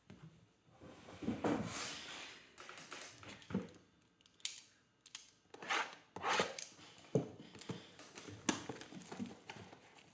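Plastic shrink wrap being torn and peeled off a sealed box of trading cards: a run of irregular crinkling, tearing rasps, starting about a second in.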